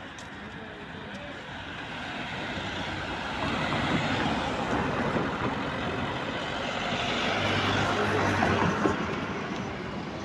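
A road vehicle driving past: engine and tyre noise builds over several seconds, is loudest in the second half, then eases off near the end.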